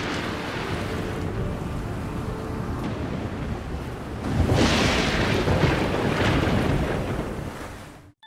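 Stormy sea: waves and wind rushing, with a louder surge of surf about four and a half seconds in that dies away near the end.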